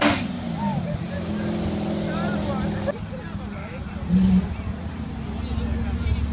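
Cars driving slowly past, a Chevrolet Corvette's V8 running with a steady low exhaust note. There is a short loud blip about four seconds in, and a deeper rumble from a custom hot rod's engine builds near the end.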